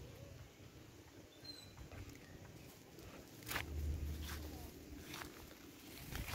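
Faint rustles and scattered soft knocks of someone moving about while handling the camera, with a duller low thump and rumble about halfway through.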